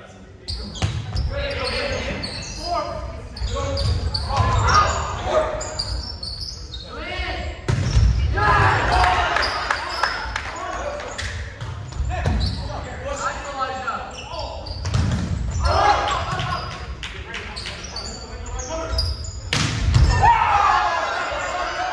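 Volleyball rally in a gym: the ball is struck several times, each a sudden sharp hit, with players shouting and calling between the hits, all echoing in the large hall.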